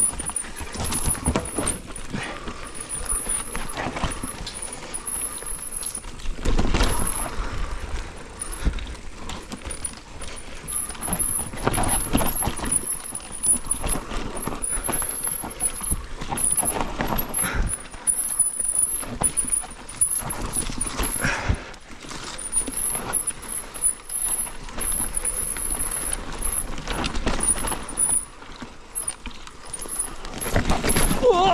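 Mountain bike riding down a dirt forest trail: tyres rolling on dirt, with the bike rattling and knocking over bumps and roots.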